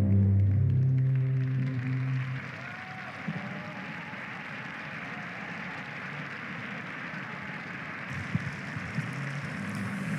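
The accompaniment music ends on low held notes in the first two seconds, then an audience applauds steadily, with a few louder claps near the end.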